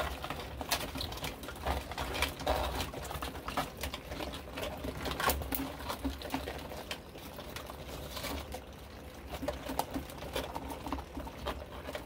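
Live Dungeness crabs clambering over one another in a plastic bin, their shells and claws knocking and scraping in irregular clicks, over a low steady hum.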